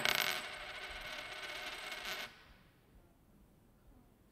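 A metal coin falling on a wooden table: a sharp strike, then a metallic ringing for about two seconds that stops suddenly.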